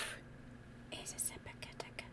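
A woman whispering short, hissing light-language syllables, soft and breathy, starting about a second in, with a few small clicks among them.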